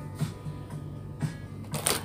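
Background music with a low steady hum, a few soft knocks, and a short burst of noise near the end.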